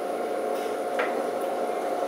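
Room tone with a steady electrical hum and one faint click about a second in.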